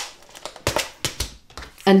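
Handling noise from plastic craft packaging: a few light clicks and a crinkle as a plastic-covered instruction card is handled and a plastic box of snap fasteners is set out.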